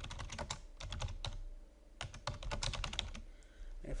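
Typing on a computer keyboard: two quick runs of keystrokes with a short pause between them.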